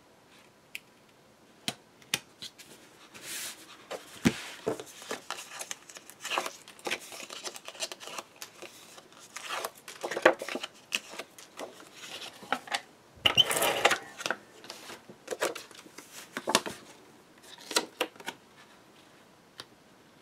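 Paper and cardstock being handled on a tabletop: irregular rustling, sliding and tapping with scattered sharp clicks, beginning about two seconds in. The loudest and longest rustle comes about two-thirds of the way through.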